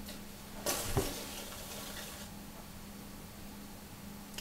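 Electric potter's wheel running with a steady low hum while hands work a wet clay bowl on it. Just before a second in there is a short rush of noise ending in a click.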